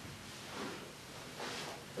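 Faint rustling from handling an alcohol wipe while cleaning a fingertip before a glucose test, in two soft swells.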